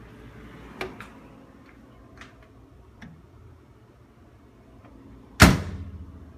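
A few light clicks and knocks, then a loud thud with a short ringing decay about five and a half seconds in as a refrigerator door is swung shut.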